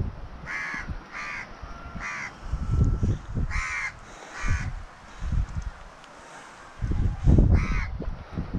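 A crow cawing: six short caws at irregular intervals. Low gusts of wind rumble on the microphone between them, strongest near the end.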